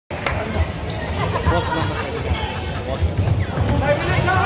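A basketball bouncing on a hardwood court as a player dribbles, a few dull thumps at uneven spacing, with voices of players and spectators in the hall behind.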